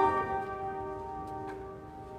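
Piano playing a final chord, struck just as the sound begins, its notes ringing on and slowly fading away.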